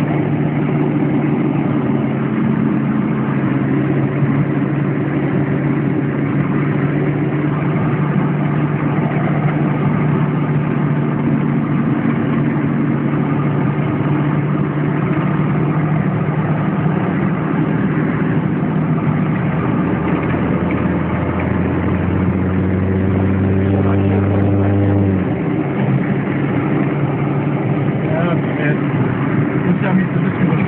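Mercedes G-Wolf off-roader's engine running steadily while driving a rough forest track, heard from inside the cab. A lower hum joins for a few seconds before the engine note shifts near the end.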